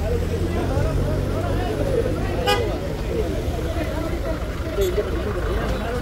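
A police van's engine running with a low hum that fades after about two and a half seconds, under a crowd of people talking and shouting. A single sharp click about halfway through.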